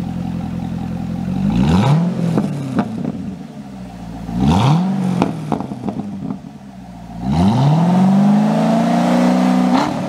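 2013 Chevrolet Corvette C6's 6.2 L LS3 V8 revved through its dual-mode exhaust with the electronic exhaust valves open. It goes from idle to two short blips, each dropping back with a few crackles, then to a longer rev held high near the end.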